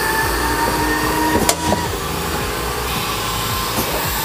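Robotic palletizer at work: the Doosan collaborative robot arm and its vacuum gripper run with a steady mechanical hum and a thin motor whine while it carries a box. There is a sharp click about a second and a half in.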